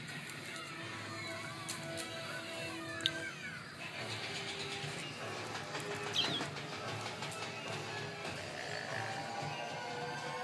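Quiet background music, with a brief high chirp from a white-bellied caique about six seconds in.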